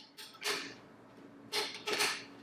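Three faint scuffs and creaks from push-up grips shifting on a carpeted floor as the hands walk out into a plank.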